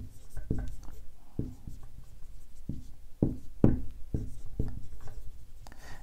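Dry-erase marker writing on a whiteboard: a run of short, irregular strokes and taps as a word is written out.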